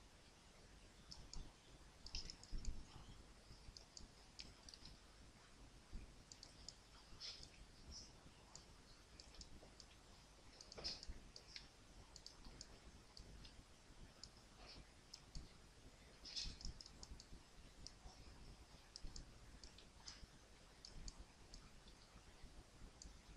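Faint computer mouse clicks, irregular and scattered, over a low steady room hum.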